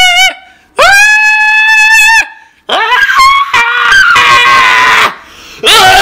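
A voice singing long, high, strained held notes with a wobble, off-key and close to screaming, then a rougher, broken stretch of singing about three seconds in.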